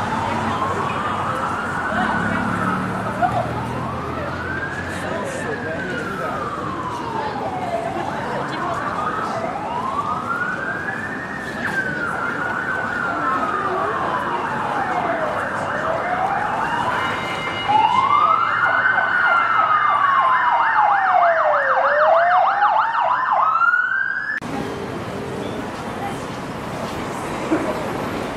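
Emergency vehicle siren wailing on a city street, its pitch slowly rising and falling every few seconds. About two-thirds of the way in, a fast yelping siren joins and the sound gets louder; both stop abruptly near the end.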